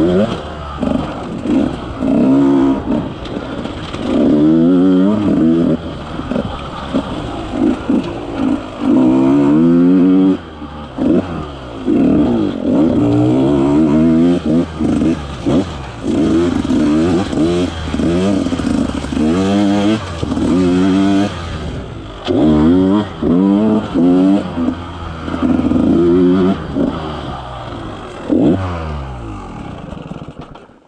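KTM 150 XC-W single-cylinder two-stroke engine revving in repeated bursts under throttle, each one climbing in pitch and dropping back between shifts and throttle lifts. Near the end the revs fall away as the bike slows.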